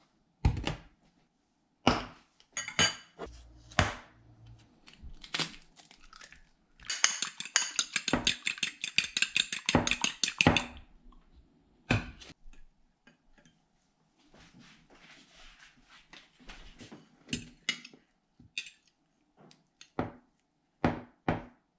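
A fork beating an egg in a ceramic bowl: a fast, even run of clinks for about four seconds in the middle. Around it come scattered single knocks of bowls and utensils set down on a countertop, and a soft rustle later on.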